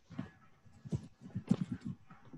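Computer keyboard typing: a quick run of about eight keystrokes, most of them close together in the second half.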